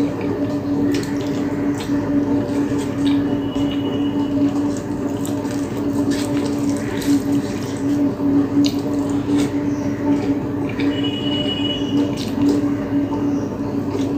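Fingers mixing rice and fish curry on a plate, with soft squelches, small clicks and chewing, over a steady low hum.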